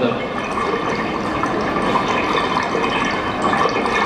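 Waterfall and rushing stream water, a steady, dense rush, played back from a video through a hall's loudspeakers.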